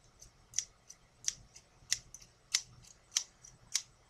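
A pair of scissors opened and closed repeatedly, the blades meeting in sharp snips at a steady pace, about six strong ones roughly every 0.6 seconds with fainter clicks between.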